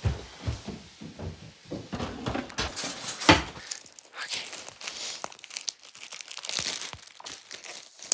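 Crinkling and rustling of a plastic cat-treat packet being handled, in short irregular bursts, with soft footfalls in the first couple of seconds and one louder rustle a little over three seconds in.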